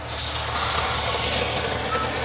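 Boiling water poured from a glass measuring jug into a hot foil-lined water pan in a charcoal kettle grill, giving a steady hiss with rising steam.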